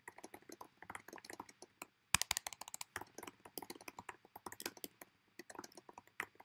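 Typing on a computer keyboard: a quick run of keystrokes with a short pause about two seconds in.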